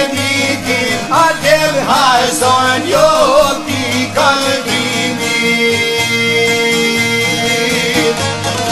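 Albanian folk song: plucked string instrument playing, with a sung, ornamented line that bends up and down in the first half, then steadier held notes.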